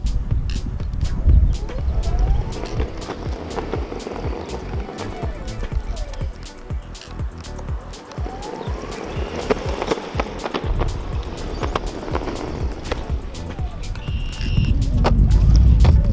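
Backfire Mini electric skateboard accelerating and braking on asphalt. The wheels give a low rolling rumble, and a motor whine rises and falls in pitch, with background music over it.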